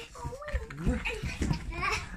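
Wordless vocal sounds that waver up and down in pitch, several short calls in a row, bleat-like rather than words.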